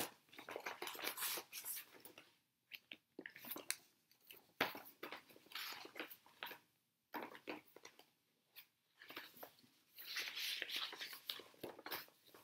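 Paper and fabric handling noise: a printed cross-stitch chart and project pieces rustling and crinkling in irregular bursts, with short pauses between them.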